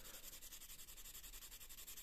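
Very faint rubbing, barely above a steady background hiss: a small pad scrubbing at a plated metal ring to wear through the plating and expose the base metal.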